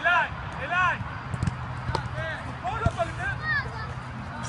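Short shouted calls from voices around a football pitch, with a few sharp thuds of footballs being struck, the hardest near three seconds in, over a steady low hum.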